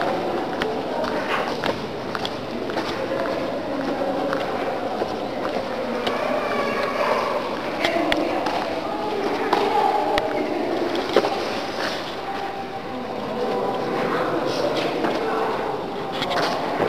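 Indistinct voices talking in the background, with scattered clicks and knocks.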